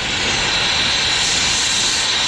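Brazing torch flame burning against a copper refrigerant joint: a loud, steady rushing hiss.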